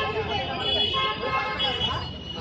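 Busy street noise: people talking over road traffic, with long held vehicle horn notes.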